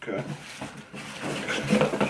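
A man's voice saying a short word, then more low voice sounds near the end, with quieter rustling and handling of a cardboard shipping box in between.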